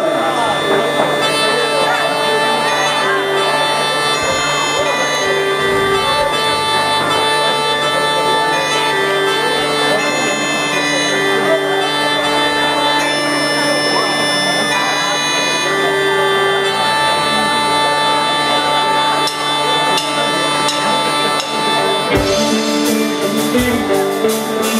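Synthesized bagpipes playing a slow melody over a steady drone, the bagpipe intro of a country-rock song; drums and the band come in near the end.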